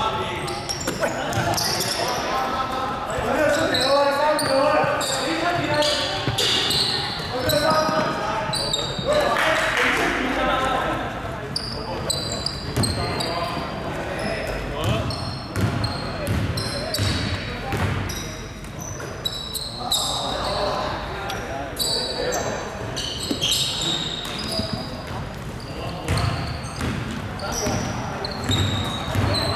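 Basketball bouncing on a hardwood gym floor during play, with sneakers squeaking and players calling out, all echoing in a large sports hall.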